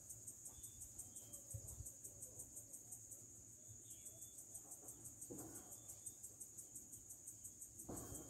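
Faint, steady high-pitched chirping of insects, pulsing about four to five times a second, with a soft rustle about five seconds in.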